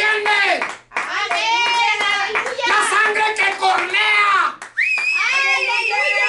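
A person's voice in rapid, excited, wordless bursts, then from about five seconds in a long, high, wavering held note.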